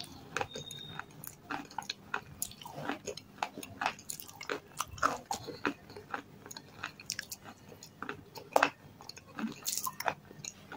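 Close-miked chewing of red shale stone (eating clay): an irregular run of crisp crunches and clicks as the pieces break up in the mouth, the loudest a little past eight seconds in.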